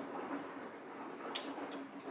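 Quiet sipping from a small paper coffee cup over a faint steady low hum, with one short click about a second and a half in.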